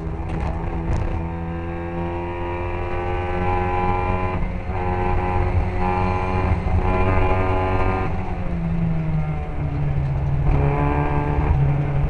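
Classic Mini racing car's engine heard onboard at high revs, its pitch climbing and then breaking off and dropping several times as it changes gear, pulling hard again near the end.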